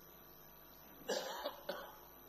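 A person coughing twice, a longer cough about a second in and a shorter one just after, over quiet room tone.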